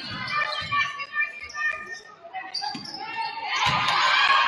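A basketball bouncing on a hardwood gym floor during play, a few dull thumps, with players' and spectators' voices echoing in the large gym and growing louder near the end.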